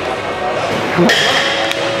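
Gym background sound: a sudden metal clank about a second in that keeps ringing, typical of weights being handled, over faint music.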